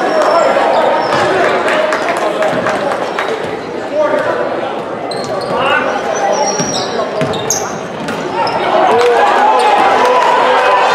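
Basketball dribbled on a hardwood gym floor during play, bouncing repeatedly, with voices echoing in the gym.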